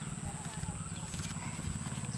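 A steady low hum with a fine, fast pulsing and a thin, steady high whine above it. No distinct event stands out.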